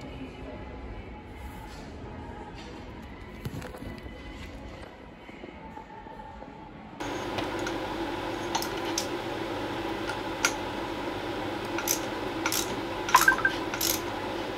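Quiet shop ambience for the first half, then a steady hum with sharp metallic clicks and clinks of screws and a hand tool as screws are fitted and tightened on a small dirt bike's engine casing. The clicks come loudest near the end.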